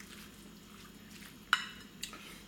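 Soft, faint stirring of a mayonnaise-dressed corn and tuna salad with a silicone spatula in a glass bowl, then a single sharp clink about a second and a half in as the spatula knocks against the glass.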